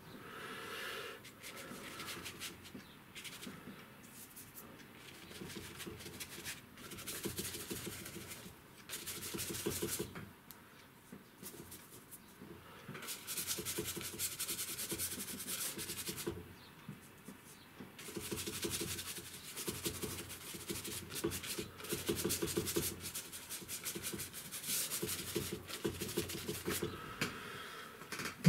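Bristle brush scrubbing acrylic paint onto sketchbook paper in bouts of quick back-and-forth strokes, a scratchy rasp, with short pauses between bouts.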